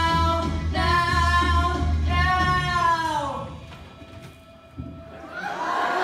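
Stage singers finish a musical-theatre number over a backing track with a steady bass, holding long notes, the last one sliding down about three seconds in. After a short lull, a swell of shouting and cheering voices rises near the end.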